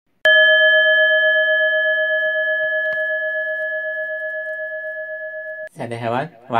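A bell struck once, ringing with several steady tones that slowly fade with a slight wobble, then cut off abruptly. A man's voice begins right at the end.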